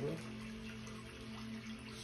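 A steady low hum with a faint hiss of room background noise, after the end of a spoken word.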